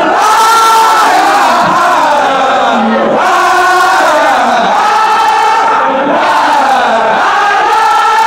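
A large crowd of men chanting zikr together, loudly and in unison, in long held phrases whose pitch sags at the end of each line; new phrases begin about three seconds in and again near the end.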